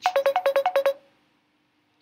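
WhatsApp incoming voice-call ringtone on a computer: a quick run of short notes on two alternating pitches, lasting about a second and then stopping, signalling an incoming call.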